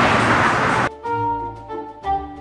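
Loud, even street noise that cuts off abruptly about a second in, giving way to background music of held, changing notes, brass-like in tone.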